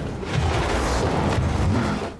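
Film sound effect: a deep rumble under a dense rushing noise, held for about two seconds and dropping away at the end.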